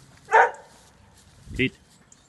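Two short shouted words of command to a working sheepdog: one about half a second in and one near the end.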